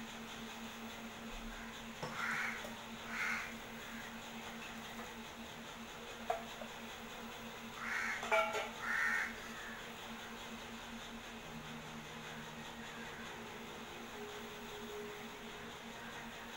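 A sweet cutlet frying in shallow oil in a pan, giving a faint steady sizzle. Over it a bird calls in two pairs of short calls, about two seconds and about eight seconds in; these are the loudest sounds.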